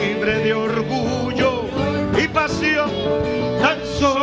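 Live worship music: singing over instrumental accompaniment with steady held notes.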